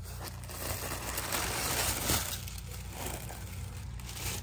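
Tissue paper crinkling and rustling as hands unfold its layers inside a cardboard box, with irregular crackles that are loudest around two seconds in.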